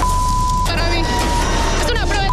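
A steady high-pitched censor bleep, about two-thirds of a second long at the start, blanking out a woman's words in an interview, then her voice again near the end. Background music with a steady bass runs underneath.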